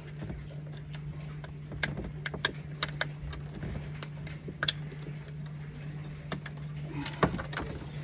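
Scattered small clicks and rattles of wires and plastic spade connectors being handled as a rocker switch is worked out of its panel, over a steady low hum.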